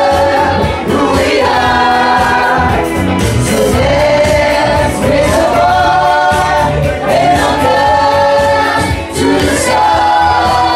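Singers performing into microphones over music with a steady bass and beat, holding long notes that slide between pitches.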